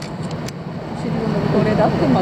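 A steady low engine hum, with people talking in the second half.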